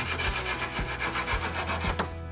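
Fast, even back-and-forth rasping of a hand tool being worked by hand at a workbench, with a regular low beat underneath.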